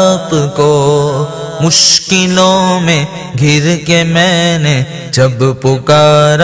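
Solo voice singing an Urdu manqabat, a devotional praise poem, in long ornamented phrases that bend in pitch, over a steady low drone. There is a brief hiss just before two seconds in.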